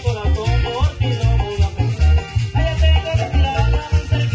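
A live chanchona-style band playing tropical dance music: a loud, steady bass pulse drives the beat under a sliding melody line.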